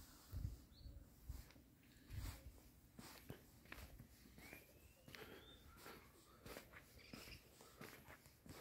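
Near silence outdoors: soft footsteps on stone paving, with a faint, thin animal call about halfway through.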